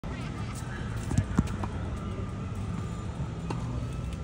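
Handling noise as a phone camera is set up on a slatted bench: a few short knocks, two louder ones close together about a second in, over a steady low outdoor rumble.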